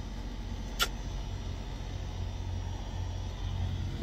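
Steady low rumble of a Peterbilt semi truck's diesel engine idling, heard inside the cab, with one short click a little under a second in.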